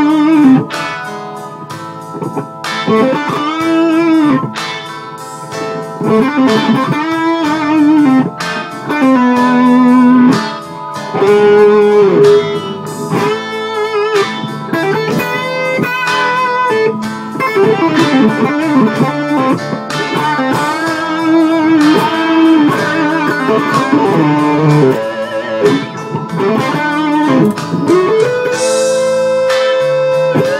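Vintage Lemon Drop electric guitar through a Marshall Valvestate 10-watt amp, playing a lead melody in A with frequent string bends and sustained notes: the A blues scale with the major 2nd (B) added.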